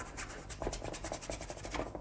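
Paintbrush scrubbing thin oil paint onto a canvas in many quick back-and-forth scratchy strokes.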